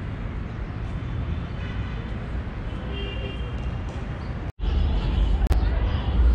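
Outdoor city ambience: a steady low rumble of distant traffic. About four and a half seconds in the sound drops out for an instant, and after it the low rumble is louder.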